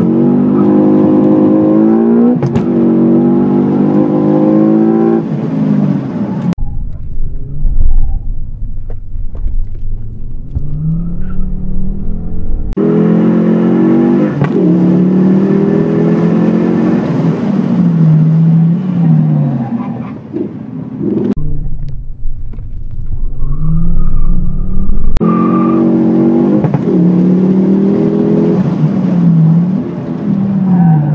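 Competition car's engine heard from inside the car, accelerating hard and shifting up through the gears, the note climbing and dropping with each change. Twice the engine note falls away for several seconds, leaving only a low rumble.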